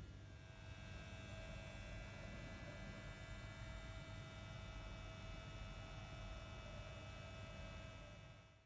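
Faint, steady electrical hum over room tone, with a low rumble and several thin steady whining tones that do not change.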